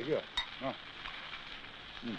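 Food sizzling on a hot, smoking grill behind a stall counter, an even frying hiss, with a sharp click about half a second in.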